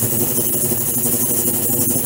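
Ultrasonic water tank running with its liquid-circulation system: a steady mechanical hum under a constant high hiss of agitated water.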